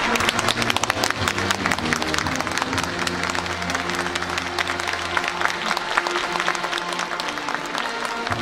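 Stadium applause, many hands clapping steadily, with music playing underneath.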